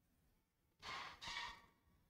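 A woman's soft breathy exhale, like a sigh, in two short puffs about a second in, picked up close by a clip-on microphone; otherwise near silence.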